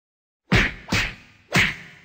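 Three sharp whacks of blows landing, the dubbed hit sound effects of a staged beating, starting about half a second in and about half a second apart, each dying away quickly.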